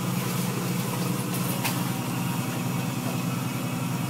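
Steady low machine hum, even and unchanging, with two faint clicks about a second and a half in.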